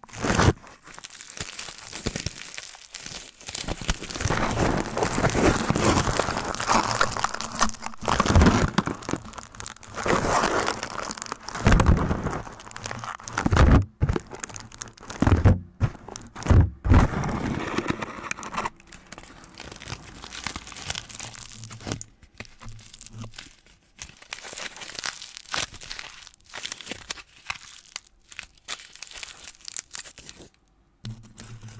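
Aluminium foil wrapped over a Blue Yeti microphone's grille, crinkled and rubbed by fingertips right on the mic: continuous crackling with several louder crunches in the first half, then softer towards the end.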